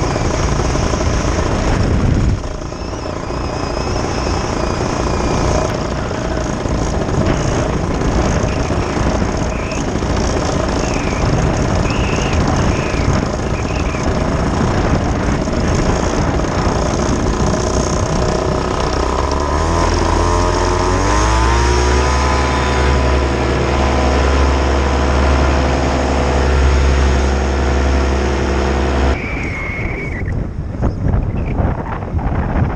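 Paramotor engine and propeller running under heavy wind rush on the microphone. About two-thirds of the way through, the engine revs up, its pitch rising over a few seconds, then holds a steady high note as the wing climbs, before the sound breaks off abruptly near the end.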